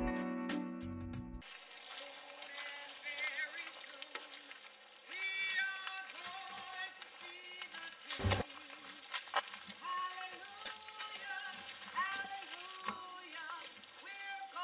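Keyboard music cuts off about a second and a half in. A steady hiss follows, with a faint, high-pitched voice whose pitch rises and falls in short phrases. One short, loud knock comes just after the middle.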